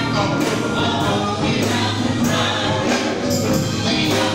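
Live gospel vocal group singing in harmony, backed by a band with a steady beat.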